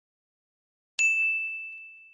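A single bright bell ding, the notification-bell sound effect of a subscribe-button animation. It strikes about a second in on one high, clear tone and fades away slowly.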